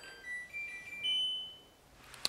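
LG F1495KD washing machine's power-on chime: a short melody of four electronic beeps stepping up in pitch, the last note held about a second before fading.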